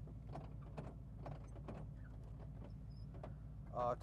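Windshield wipers of a 1970 Plymouth Cuda sweeping across the glass, with faint regular strokes about twice a second. Underneath is the steady low hum of the car's 383 V8 engine running.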